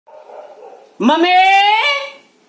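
A voice calling "Mummy" in one long, drawn-out, high call, starting about a second in and stepping up in pitch near the end.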